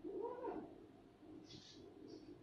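A short call that rises and falls in pitch, from a voice or an animal, at the start, then a brief high squeak about one and a half seconds in, typical of a marker on a whiteboard.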